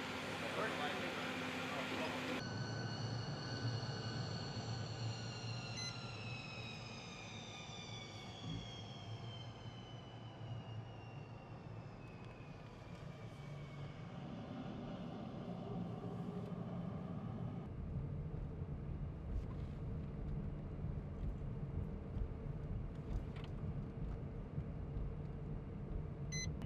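Lockheed TU-2S jet's General Electric F118 turbofan running: a high whine with several overtones falls slowly in pitch over a low hum. About two-thirds of the way in, a deeper rumble grows stronger.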